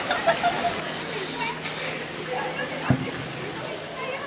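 Brief bits of people's voices over a steady outdoor background noise, with a single sharp knock a little before three seconds in.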